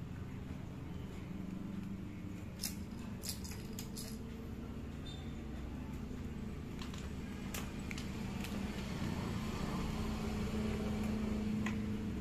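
Small clicks and rubbery squeaks of a CDI unit being worked into a tight rubber holder by hand, scattered through the first half, over a steady low hum that grows slightly louder near the end.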